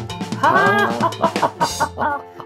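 High, cackling laughter from a cartoon-voiced character, in quick choppy bursts over background music.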